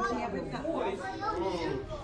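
Indistinct chatter of several voices talking at once in a large hall.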